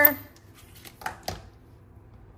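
Two light clicks a second or so in, from a plastic ink pad and a clear acrylic stamp block being handled, over quiet room tone.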